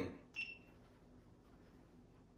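A GoPro action camera's brief high electronic beep about half a second in, confirming the spoken command to start recording.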